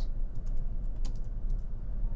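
Typing on a computer keyboard: a run of irregular light key clicks.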